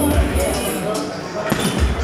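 Punches thudding into a heavy punching bag, with deep thumps at the start and again near the end.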